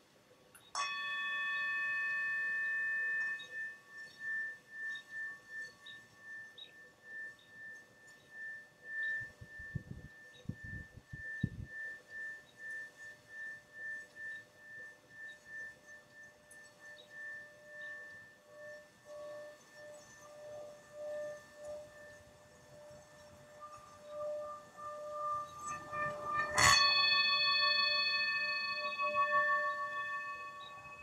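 Tibetan singing bowl struck about a second in, ringing with several overtones and a pulsing, wavering tone as it slowly fades. It is struck again, louder, near the end and rings on.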